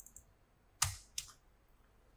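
A few separate keystrokes on a computer keyboard while text is being deleted in a code editor, the loudest about a second in.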